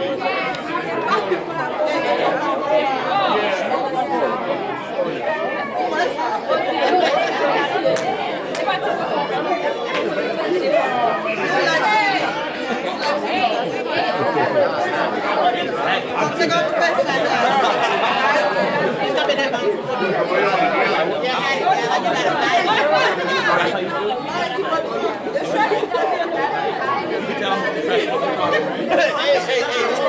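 Many people talking at once, overlapping conversation and chatter echoing in a large room.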